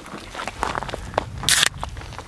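An aluminium beer can's pull tab cracking open with a short fizzing hiss about one and a half seconds in, after a few light clicks and scrapes of the cans being handled.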